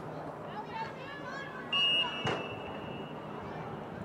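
A referee's whistle: one sharp blast a little under two seconds in, its steady high note then held more softly for about another second and a half, signalling a stop in play.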